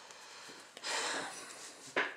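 A person breathing out through the nose, a short noisy exhale of about a second, followed by a sharp click near the end.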